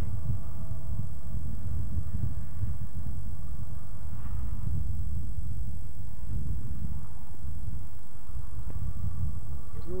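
Wind buffeting a camcorder microphone: a loud, rumbling low roar that keeps wavering.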